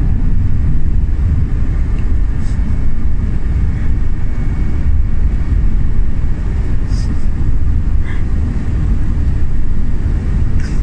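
Steady, loud low rumble of a vehicle in motion, heard from inside its cabin, with a few faint clicks.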